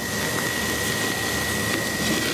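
Skirt steak sizzling as it sears on a charcoal kettle grill's grate over direct heat: a steady hiss of hot meat and rendering fat.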